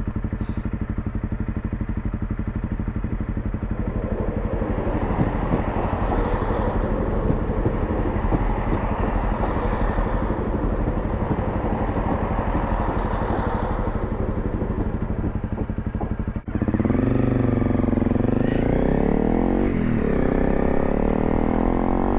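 Honda CRF250 Rally's single-cylinder engine idling while a passenger train passes close by for about ten seconds. About three-quarters of the way through, the engine revs up and the bike pulls away through the gears.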